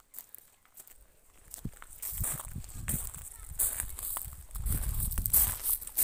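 Footsteps crunching on a gravel path, starting about two seconds in, over a low rumble.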